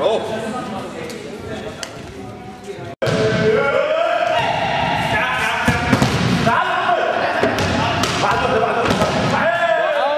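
Thuds and slams of judoka falling onto the judo mat, among loud voices. The sound cuts off sharply about three seconds in and comes back louder.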